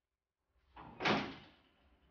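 A door being shut about a second in: a soft rattle leads into one firm knock that dies away quickly.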